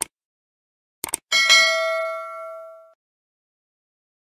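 Subscribe-button animation sound effects: a mouse click at the start, a quick double click about a second in, then straight after it a bright notification-bell ding that rings out and fades over about a second and a half.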